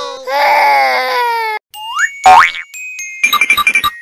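A string of cartoon sound effects: a crying wail lasting about a second and a half, then two quick rising boing-like glides, the second the loudest, and near the end a fast run of bright pulsing tones, about eight a second.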